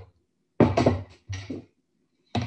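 Two short knocks and clatters of kitchen things being moved and set down on a countertop, one about half a second in and a shorter one a little after a second.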